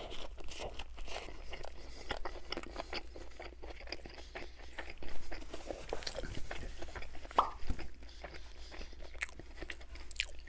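Close-miked eating of a Burger King original chicken sandwich (breaded chicken patty, lettuce and tomato on a sesame bun). A bite is taken at the start, followed by steady chewing full of small crisp clicks and crunches.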